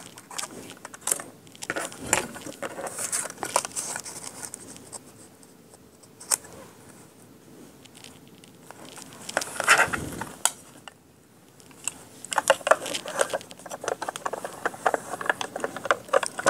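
Hands handling a metal cutting die, a strip of paper and plastic cutting plates on a craft mat: scattered light clicks, taps and paper rustles, with a busier run of clicks and scrapes in the last few seconds.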